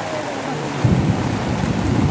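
Heavy rain falling steadily on wet, flooded ground. A deep rumble comes in suddenly just under a second in and carries on under the rain.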